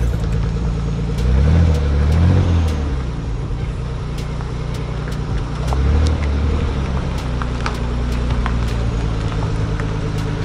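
Nissan 300ZX twin turbo's V6 engine running as the car moves out slowly under light throttle. The revs rise and fall twice between about one and three seconds in, and once more about six seconds in.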